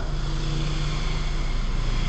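A steady mechanical drone: a low hum under an even hiss.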